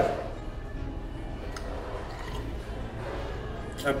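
Faint background music under a pause in speech, with a man quietly chewing a mouthful of food and one light click about one and a half seconds in.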